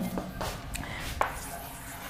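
Chalk on a blackboard: a few light taps and a faint scratching as a circle is drawn.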